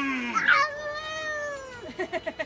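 Two drawn-out, high-pitched vocal cries, like a whine. The first ends with a sharp drop in pitch just after the start; the second is higher and slides slowly down, falling away near the end.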